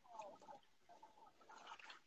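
Near silence, with a few faint, brief chirp-like sounds and no steady machine noise.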